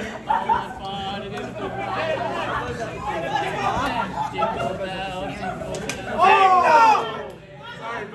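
A group of people chattering and calling out over one another, with one loud voice swooping up and down about six seconds in.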